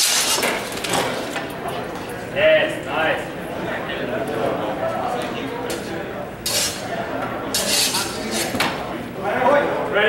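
Steel longsword blades clashing in a fencing bout: a sharp clink right at the start, then more clinks and scraping rings later, in a cluster, in a large echoing hall. Voices chatter in the background.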